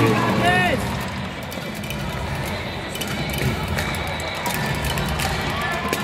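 Background crowd chatter in a large hall with music playing underneath; one voice calls out briefly about half a second in.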